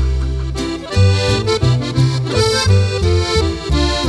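Norteño band playing a song's instrumental intro: button accordion carrying the melody over a tololoche (upright bass) line of low notes changing in a steady rhythm.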